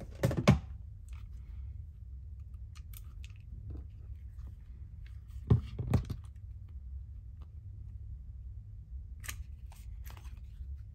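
Hand-held metal hole punch being handled on a cutting mat. There are a few knocks and clicks, the loudest near the start and about five and a half to six seconds in, with lighter clicks around three seconds in and again near the end.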